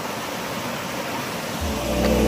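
Shallow stream rushing over rocks, a steady hiss of running water. Background music with low held notes comes in near the end.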